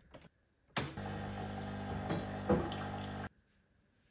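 De'Longhi espresso machine's pump humming steadily as it pushes water through the coffee. It starts with a click about a second in and stops abruptly a little after three seconds.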